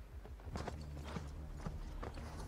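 A horse's hooves clopping in an irregular run of soft knocks over a steady low rumble, from a TV drama's soundtrack.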